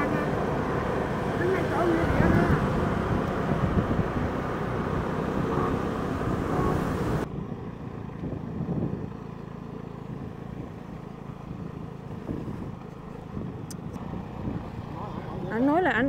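A vehicle running, with road noise while riding, and a man's voice in the first couple of seconds. About seven seconds in, the sound drops abruptly to a quieter, duller engine and road hum.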